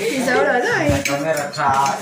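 Fork clinking and scraping on a ceramic plate as a roast chicken is pulled apart, under several people talking.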